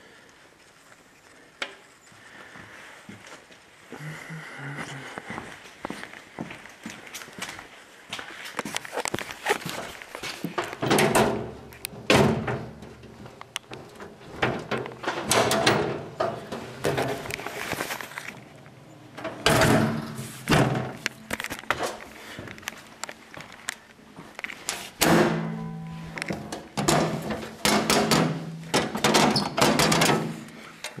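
A run of knocks, thumps and rattles from metal parts of a tractor being handled and climbed on, in several louder clusters after a quiet start. Near the end a few steady low tones sound under the knocking.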